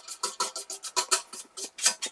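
Hand brush scrubbing ash off the steel inside of an offset smoker's firebox lid: quick scratchy strokes, about five a second, the last one the loudest.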